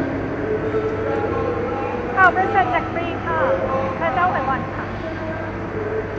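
Steady low rumble of city traffic under elevated roadways. A person's voice is heard for a couple of seconds near the middle.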